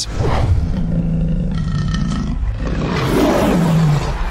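Lion roar sound effect in an animated logo sting: one long, loud roar that swells near the end.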